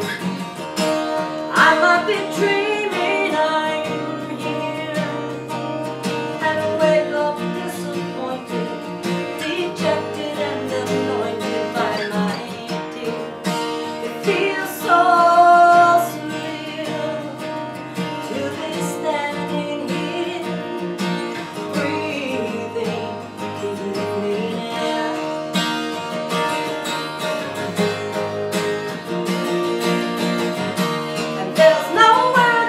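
A woman singing live, accompanying herself on a strummed acoustic guitar, with one long held note about halfway through that is the loudest moment.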